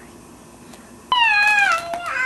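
A cat meowing once, a single long meow that starts suddenly about halfway through and falls in pitch.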